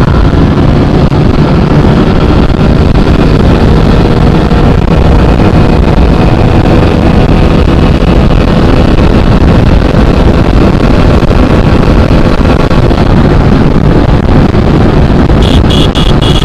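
TVS Apache RTR 200 4V single-cylinder engine held at full throttle in fourth gear near 7000 rpm as the bike gains speed past 120 km/h, buried under heavy wind rush on the microphone. A brief high-pitched beeping starts near the end.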